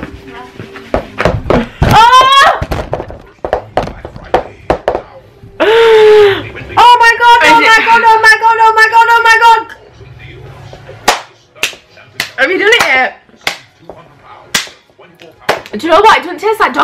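Two women crying out in disgust without words at a foul-tasting jelly bean: a rising squeal, a rough groan, then one long held wail. Several sharp slaps come near the end.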